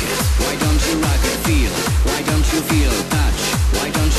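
Electronic dance music with a steady, driving kick drum on every beat and a pulsing synth line over it; no vocals.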